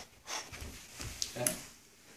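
A man thrown off balance falls to the floor: scuffling of bare feet and clothing, then a dull thump of his body landing about a second in.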